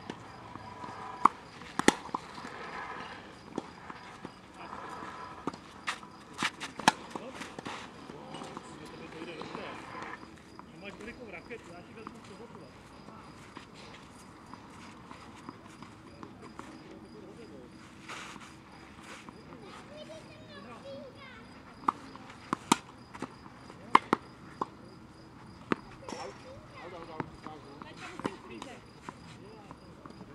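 Tennis rally on a clay court: sharp pops of the ball coming off the rackets, singly and in quick pairs, with people's voices in roughly the first third.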